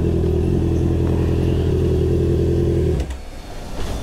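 Honda CBR650R inline-four motorcycle engine idling steadily, then switched off about three seconds in, cutting out abruptly as the bike is parked.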